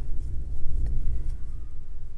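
A low rumble that swells through the middle and then eases off.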